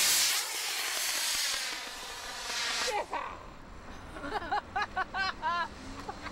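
Estes solid-fuel model rocket motor burning with a loud, steady hiss as the Zagi flying wing it powers is launched, the burn ending about three seconds in. Voices and laughter follow near the end.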